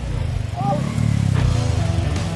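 Motorcycle engine running with a low, steady rumble as the bike is pushed up a steep, rocky dirt slope, with a brief call from one of the men.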